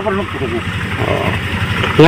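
A motor engine running steadily with a fast, even pulse.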